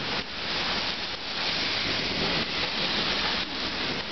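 Steady rain pouring down in a summer thunderstorm, a constant even hiss.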